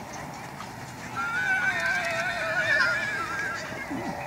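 A horse whinnying: one long, wavering call starting about a second in and lasting some two and a half seconds.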